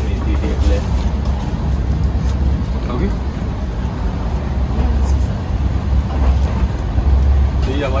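Passenger train in motion heard from inside the coach: a steady low rumble of running noise.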